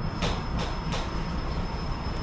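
Steady low room rumble with a faint, steady high-pitched whine, and three short soft clicks in the first second.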